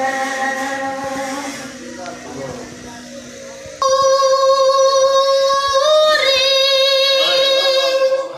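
A solo voice singing a devotional naat, holding long drawn-out notes. One note fades over the first couple of seconds; a new one starts suddenly about four seconds in and steps up in pitch about two seconds later.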